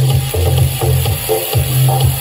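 Bose S1 Pro portable PA speaker playing electronic dance music at high volume, led by a heavy bass line of repeating low notes.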